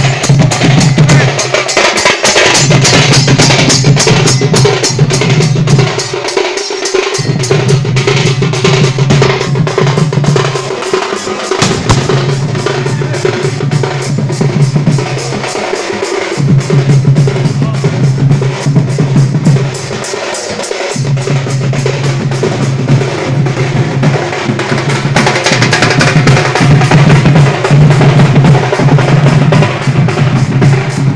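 A troupe of Indian barrel drums (dhol), beaten with curved sticks, playing a fast, dense rhythm together. Under the drumming runs a steady low drone that breaks off for a moment every four or five seconds.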